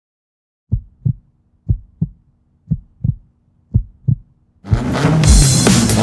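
Heartbeat sound effect: four double thumps about a second apart. Loud music cuts in about three-quarters of the way through.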